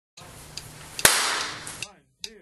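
One sharp bang about a second in, followed by a hissing tail that fades away over most of a second, over faint steady background noise.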